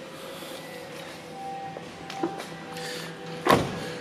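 Faint background music, then near the end a single solid thunk as the 2005 Bentley Arnage's car door is shut.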